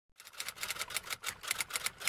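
Typing sound effect: a fast, even run of key clicks, about seven a second.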